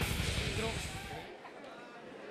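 Arena crowd murmur and scattered distant voices, with the low bass of the walk-out music fading and dropping away about a second in.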